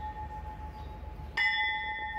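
Railway station bell struck once about one and a half seconds in, ringing on with a clear tone. The ring of an earlier strike is still sounding at the start.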